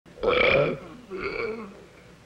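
A man belching twice: a loud belch, then a shorter, quieter one that falls in pitch.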